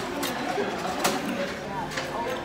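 Background chatter of diners in a restaurant dining room, with two brief clicks, one at the start and one about a second in.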